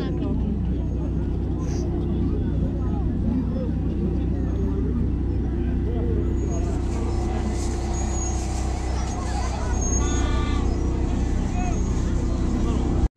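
People talking in the open over a steady low hum, with a short high-pitched call about ten seconds in.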